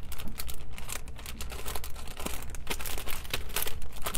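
Plastic wrap crinkling as hands press and smooth it flat, with quick, irregular crackles throughout.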